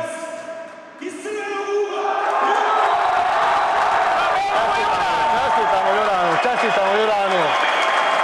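Crowd applause in a hall, breaking out about two seconds in and holding steady, under a ring announcer's voice over the PA as the winner of a boxing bout is declared.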